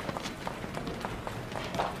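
Brisk footsteps on a hard floor, short irregular knocks a few a second, over general office bustle.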